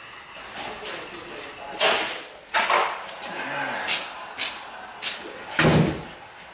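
A string of hollow plastic knocks and clunks, about ten in six seconds, as plastic oil-change gear is handled and set down, with the heaviest, deepest thud near the end.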